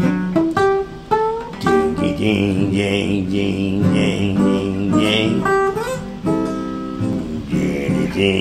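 Gibson Hummingbird acoustic guitar being strummed in a steady rhythm of about two strums a second, with some notes sliding up in pitch.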